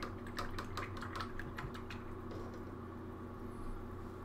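Rapid, irregular clicks of typing on a computer keyboard, busiest in the first two seconds and thinning out after, over a steady low hum.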